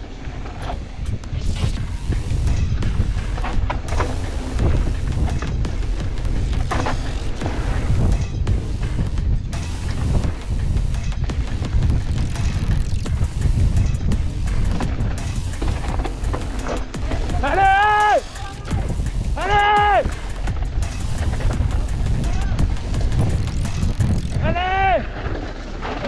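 Mountain bike descending a dirt trail filmed by an action camera on the rider: heavy wind rumble and the rattle and knock of the bike over rough ground. A person shouts three short calls, two close together near the middle and one near the end.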